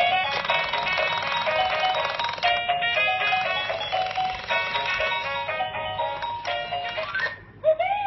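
Winfun crawling crocodile baby toy playing an electronic tune of short beeping notes through its small speaker, one of the songs set off by its music buttons. Near the end the tune breaks off and a short sound effect slides up and back down in pitch.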